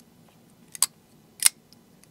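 Chaves Kickstop flipper knife being worked, its blade snapping with two sharp metallic clicks a little over half a second apart: the snappy action of its kickstop flipper.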